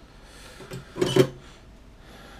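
A short clatter and knock of hand tools being handled on a workbench, about a second in.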